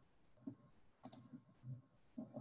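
Faint computer mouse clicks: a quick double click about a second in, with soft low thumps before and after it.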